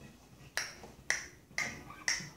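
Three sharp clicks, evenly spaced about half a second apart, with no notes sounding: a count-in keeping the tempo just before the guitar comes in.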